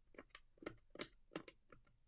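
Thumbwheel dials of a three-digit combination lock being turned, a series of faint clicks about three a second as each wheel steps through its numbers while the code is dialled in.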